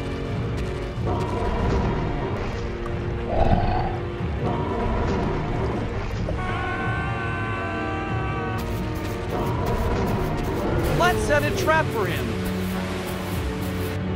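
Cartoon background music with voice-like character sounds over it, including a wavering cry about eleven seconds in.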